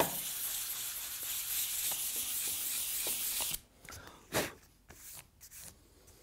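Hand sanding of a veneered marquetry panel with a sanding block: a steady scratchy hiss for about three and a half seconds that then stops, followed by a knock or two.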